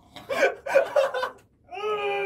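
Men laughing in short choppy bursts while straining against each other, then near the end one long held voiced cry of effort starts.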